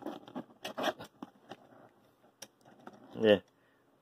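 Plastic Transformers action figure being handled and posed: a run of small clicks and scrapes from its joints and plastic parts as it is set to stand, dying away after about two seconds.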